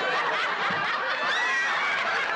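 Studio audience laughing, a steady wash of many voices.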